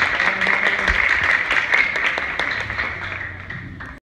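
Audience applauding, a dense patter of many hands clapping that fades away near the end.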